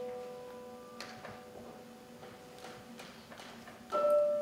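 A piano note dying away slowly, with a few faint scattered clicks, the sharpest about a second in; a new piano note is struck near the end.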